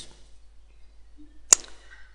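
A single sharp computer mouse click about one and a half seconds in, over quiet room tone.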